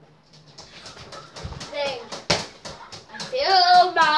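Light clicks, then a single sharp thump a little past halfway, followed near the end by a child's loud, wordless vocal sound.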